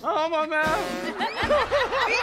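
A man speaking briefly, then laughing in a quick run of short 'ha' sounds during the second half.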